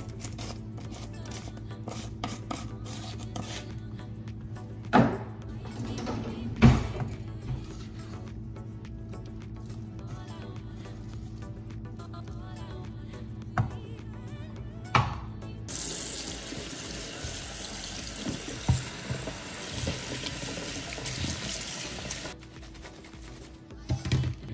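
Quiet background music with a few sharp knocks from stirring and seasoning beans in a pot. About two-thirds of the way through, a kitchen tap runs into a stainless steel sink for about six seconds, rinsing lettuce in a colander, then cuts off.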